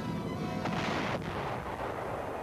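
A single sudden blast about two-thirds of a second in, its noise dying away over the following second, over background music.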